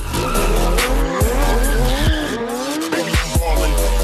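Car tyres squealing as the car drifts, the squeal wavering up and down in pitch, with music carrying on underneath.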